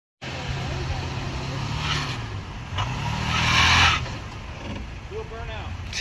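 Toyota Tacoma pickup's engine pulling as the truck climbs a steel flex ramp, its revs rising about three seconds in along with a loud rushing hiss, the loudest part. Voices come in near the end.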